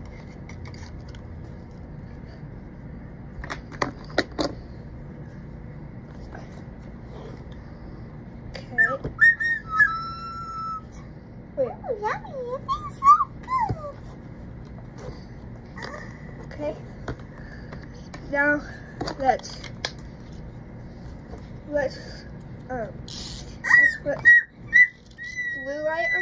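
A person making short, high-pitched gliding whistle-like sounds from time to time, with a few sharp clicks of a plastic toy dental model being handled.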